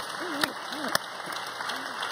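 Audience applauding, with faint voices under it.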